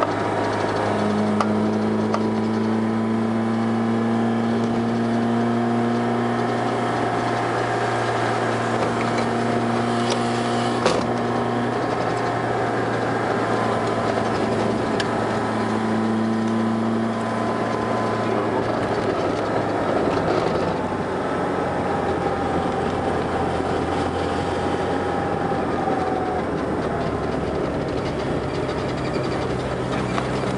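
Car engine pulling up a steep road in a low gear, heard from inside the cabin: a steady drone with engine notes that swell and fade every few seconds, and one sharp click about eleven seconds in.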